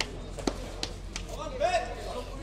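Four sharp slaps from taekwondo sparring in just over a second, amid a murmur of voices.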